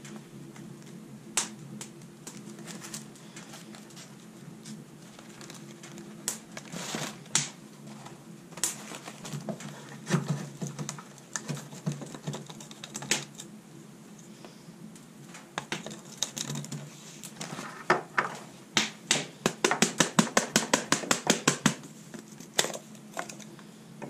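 Light plastic clicks and knocks as a small electric blade coffee grinder and paper filters are handled, then a quick run of taps, about five a second for a few seconds, near the end.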